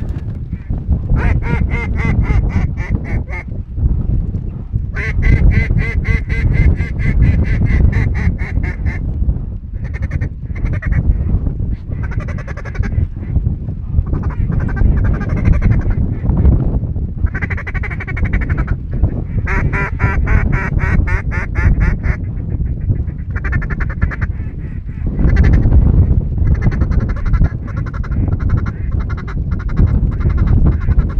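Mallard-type quacking and fast chattering, in repeated runs of many quick notes each lasting a few seconds, over a steady low rumble.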